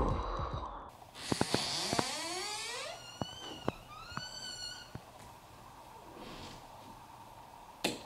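An edited transition sound effect: a hissing swell with several rising sweeps, then a few short warbling, whistle-like tones, fading to a faint steady hum.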